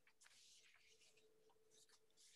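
Near silence: room tone with faint, irregular scratchy rustles and a faint steady hum.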